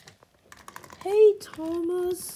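Light plastic clicks and taps from toy trains and track being handled, then two short voiced sounds near the end, the second held briefly.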